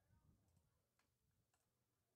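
Near silence: dead air in the broadcast.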